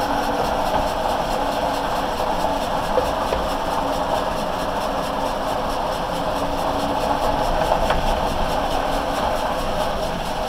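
Steady road and engine noise of a car driving, heard from inside the cabin, with a couple of small knocks.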